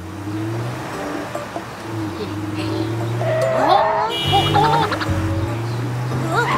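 Cartoon vehicle sound effect: a steady low engine hum of a monster truck driving along a street. A little over halfway through, brief higher tones and pitch glides come in over it.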